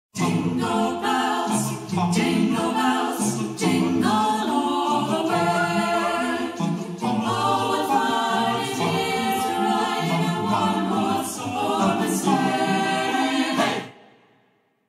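An a cappella group singing, several voices in harmony with no instruments, dropping away quickly just before the end.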